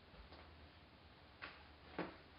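Near silence: room tone with a low hum and a few faint, irregularly spaced clicks, the sharpest about a second and a half in and again at the very end.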